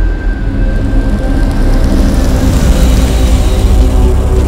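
A car driving in fast over a dirt yard: engine and tyre noise that builds to a loud rush toward the end.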